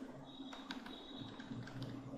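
A few faint clicks over a low, steady electrical hum.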